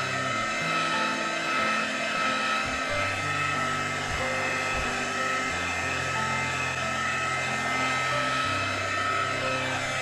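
Heat gun blowing hot air steadily over freshly poured epoxy resin to make it flow and spread, with background music underneath.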